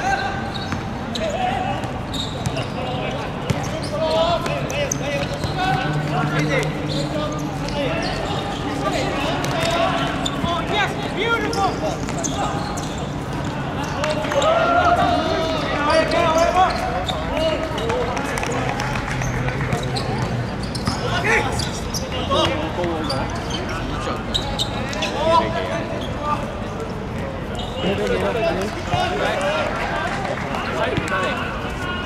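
Footballers' voices calling and shouting to each other during play, with the thuds of the ball being kicked and bouncing on a hard court.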